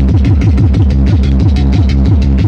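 Loud, fast electronic tekno dance music played through a rave sound system: a steady, rapid kick-drum beat with heavy bass lines that drop in pitch over and over, and quick percussion ticking above.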